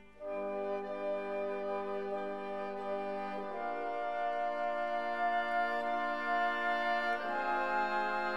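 Background music: slow, sustained chords held for a few seconds each, changing about half a second in, again midway and again near the end.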